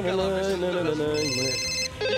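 A telephone ringing with a high electronic trill, starting a little over a second in, over a man's singing voice holding long notes.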